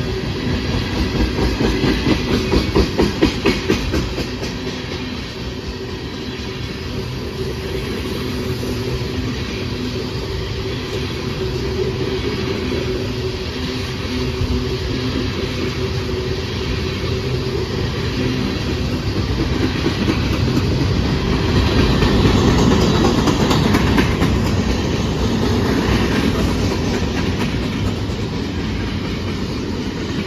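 Freight train tank cars rolling past close by: a steady rumble of steel wheels on rail with runs of clickety-clack over the rail joints. It swells louder twice, about three seconds in and again past the twenty-second mark.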